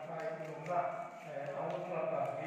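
Speech: a man talking over a microphone, in a language the transcript did not render.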